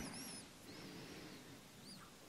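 Faint high chirping bird calls, wavering in pitch: a short call at the start, a longer one about a second in and a brief one near the end, over a quiet background.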